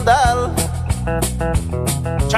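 Country-style band music: plucked guitars over a bass line and a steady drum beat, with a bending melodic phrase about the first half-second.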